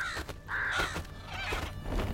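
Crows cawing, three caws in quick succession.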